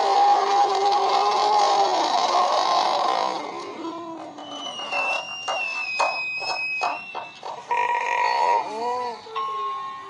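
Cartoon soundtrack, music and sound effects, played through a screen's speakers: a loud, dense stretch with held tones for the first three seconds, then quieter music with a high held tone and sharp clicks, and short call-like sounds near the end.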